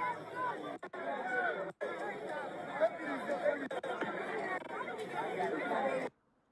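Several people talking over one another in an outdoor crowd, voices overlapping, with a couple of brief dropouts in the first two seconds.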